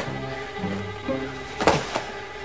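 Dramatic background music with sustained low notes, and a short sharp impact near the end.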